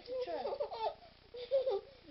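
A young child's high-pitched voice vocalizing and giggling, mixed with a short spoken exclamation.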